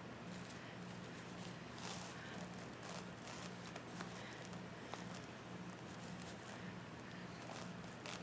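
Faint rustles and light taps as deco mesh and a burlap ribbon bow on a wreath are handled, over a steady low hum that pulses in a regular rhythm.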